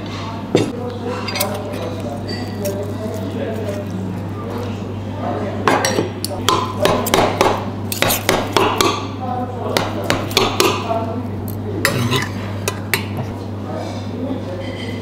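Dishes and cutlery clinking at a table: a plate set down, then a knife and fork scraping and clicking against a metal platter of lamb and rice, a quick run of clinks in the middle.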